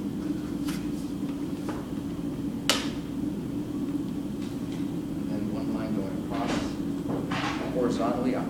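A plastic drafting triangle and pencil handled on paper, with one sharp click about two and a half seconds in as the triangle is set down, over a steady low room hum. Faint speech comes in near the end.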